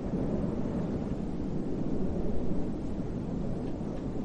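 Steady low rumbling noise outdoors, the sound of wind buffeting the microphone.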